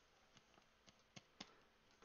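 Near silence with about four faint, short clicks at uneven intervals.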